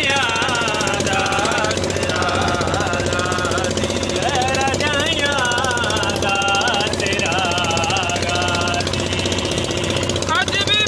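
A man singing unaccompanied, his voice holding long, wavering melodic notes, over the steady rapid knocking run of a boat's engine.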